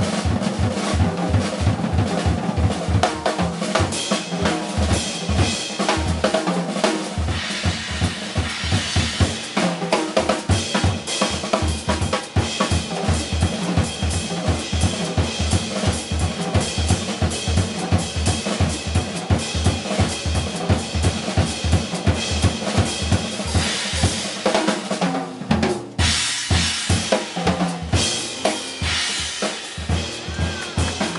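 Jazz piano trio playing an unrehearsed tune: acoustic piano, upright double bass and drum kit together, with the drums up front.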